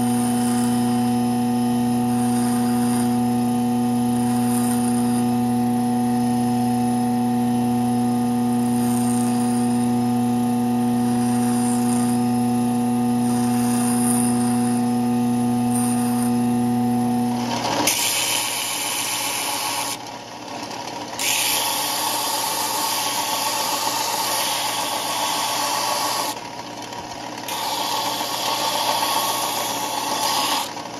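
Bench grinder motor running with a steady hum while a small piece of knife steel is held to the wheel, with faint scratchy grinding touches every couple of seconds. About two-thirds of the way through it gives way to a belt sander grinding a mahogany knife handle, a coarse rasping that falls away twice as the handle is lifted off the belt.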